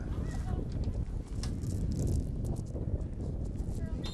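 Wind buffeting the microphone at an outdoor sports field, an uneven low rumble, with faint distant voices near the start and a few light clicks.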